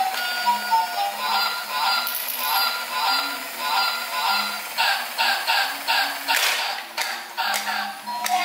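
Battery-operated walking toy swan playing its tinny electronic tune mixed with synthesized goose-like honks from its small speaker. A run of short quick calls comes about five seconds in, followed by a brief hissy burst.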